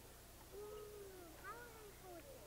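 Near silence, with a few faint high-pitched voices in the background.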